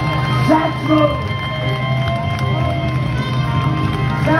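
Live jazz band music with a chord held steady throughout, and a voice calling out briefly about half a second in.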